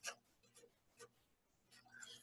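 Faint marker strokes on a paper strip: a few brief, quiet scratches of a felt-tip pen writing a word.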